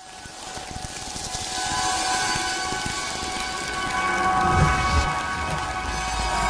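Synthesized sound-effect bed of a logo animation: a hiss that builds from nothing, with steady high tones held over it and a low swell about five seconds in.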